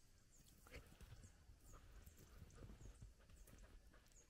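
Near silence: only faint, scattered soft knocks and ticks.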